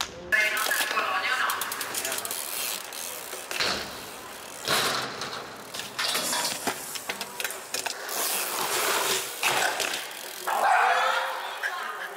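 BMX bike riding: the rear hub ticking as the bike coasts and tyres rolling on pavement, broken by several sudden loud hits.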